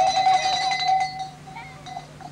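A child's voice holding one long high call for over a second, then dying away.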